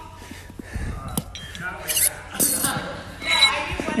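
Spring clip and small iron change plate clinking against a barbell's steel sleeve as they come off and land on the rubber floor: a few separate metallic clinks and knocks, with a short ringing ping near the end.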